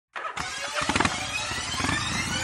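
A vehicle engine starting up suddenly and revving, its pitch climbing steadily, with music mixed in.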